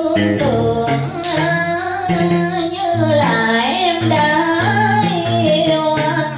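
A woman singing a slow melody into a microphone over instrumental accompaniment with a steady low bass line.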